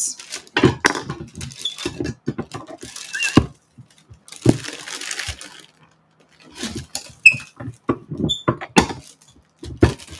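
A plastic bag crinkling and rustling, with irregular knocks and clacks as a tortilla press is closed and pressed down on a ball of dough.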